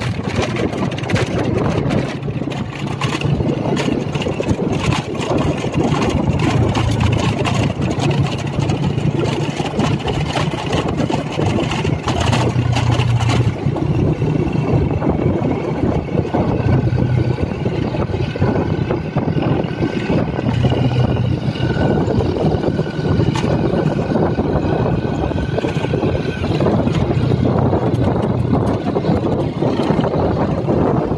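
Motorbike engine running at a steady cruising speed, with wind buffeting the microphone as it rides along.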